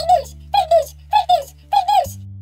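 A cartoon character's high-pitched voice wailing in short bawling cries that come in quick pairs about every half second, over a low steady drone.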